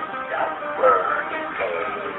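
Guitar music with a voice singing over it, the sung notes bending up and down in pitch about halfway through.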